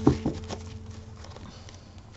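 Tarot cards being handled: a few sharp card taps and clicks in the first second, a quarter second or so apart, then quieter handling.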